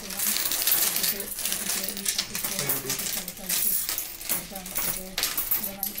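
A large heap of metal coins being sorted and counted by hand on a wooden table: coins clinking and sliding against one another without a break.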